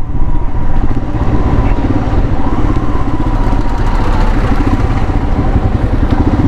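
Motorcycle engine running steadily while riding at low speed in traffic, with a dense low rumble on the bike-mounted camera microphone.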